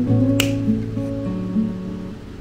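Acoustic guitar background music with plucked, strummed notes. About half a second in there is a single sharp snap: small flush cutters snipping through sterling silver wire.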